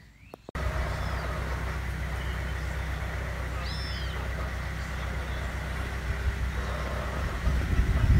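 Outdoor ambience: a steady low rumble of wind on the microphone, with a few short bird chirps over it. Stronger wind gusts buffet the microphone near the end.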